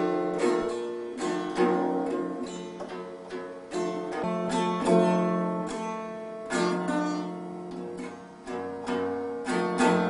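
Small acoustic guitar strummed unevenly by a young child: single strums at irregular gaps, each left to ring and fade.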